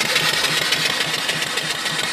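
Home-built single-cylinder steam engine with a 3-inch bore and stroke, running steadily at about 250 RPM and belt-driving a car alternator that spins at about 900 RPM.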